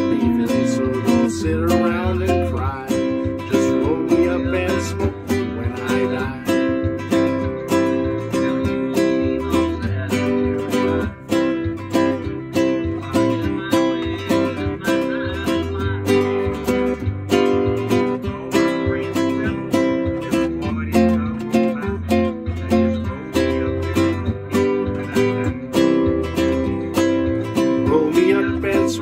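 Nylon-string classical guitar strummed in a steady rhythm with a backing recording of a country song, in an instrumental passage between sung verses.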